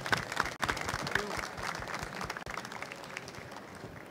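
Audience and panelists applauding, a dense patter of hand claps that is strongest in the first couple of seconds and thins out toward the end.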